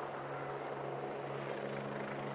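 Steady low droning hum under a faint, even wash of street noise from a protest crowd, picked up by the live feed's open microphone.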